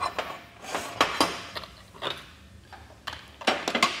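Light metal clinks and knocks of tools and parts being handled on a steel welding bench, a scatter of sharp taps a few per second.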